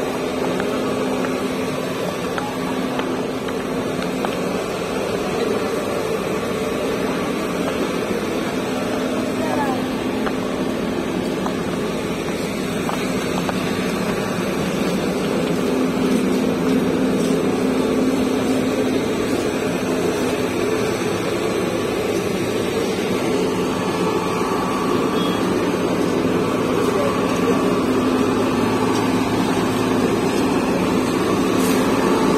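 Busy street ambience: people talking in the background over a steady hum of engine noise from traffic.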